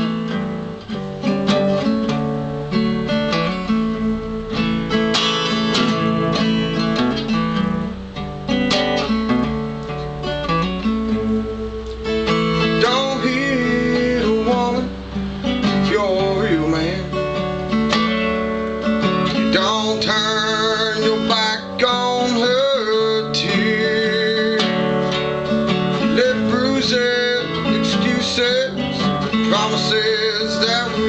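Fender acoustic-electric guitar with a capo, strummed and picked steadily as a song's accompaniment.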